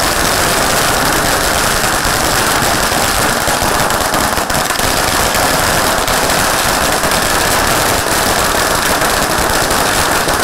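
A long string of firecrackers (a ladi chain) going off on the road in a rapid, unbroken run of bangs.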